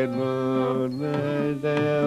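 Carnatic vocal music in Raga Kalyani: a male singer holds long notes over a drone, stepping to new pitches about a second in and again a little later.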